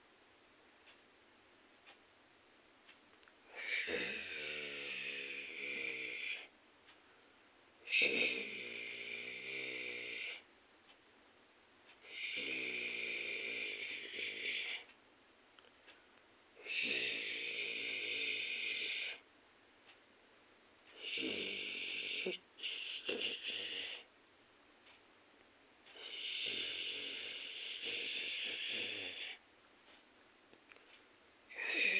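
Crickets chirping steadily in a fast pulsing trill. Six times, roughly every four to five seconds, a louder pitched call of unclear source sounds over them, each lasting about two and a half seconds.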